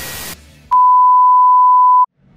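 A television test-tone beep, the steady pure tone played with colour bars, coming in sharply about two-thirds of a second in, held loud at one pitch, and cutting off abruptly at the end. Before it, the noisy tail of the intro sound fades out.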